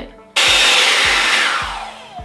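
Revlon One Step Blowout Curls hot-air styler blowing: a loud rush of air that starts abruptly about a third of a second in and fades away over the next second and a half.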